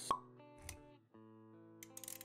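Intro jingle: sustained music notes with a sharp pop sound effect just after the start and a low thump about a third of the way in.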